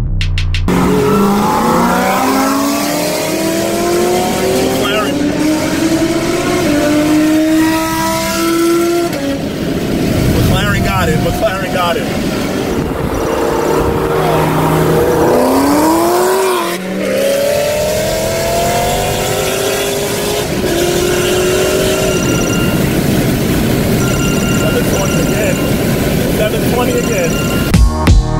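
High-performance car engines accelerating hard on the highway, revs climbing in long pulls: one long climb over the first third, then a short lull about seventeen seconds in and another climb.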